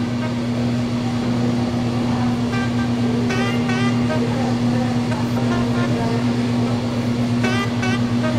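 A steady low hum under a haze of background noise, with faint distant voices now and then.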